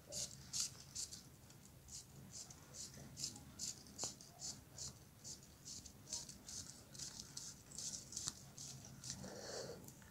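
Thin LED string-light wire being pulled hand over hand through a plastic balloon stick: quiet, quick swishing scrapes about three a second, with one sharper click about four seconds in.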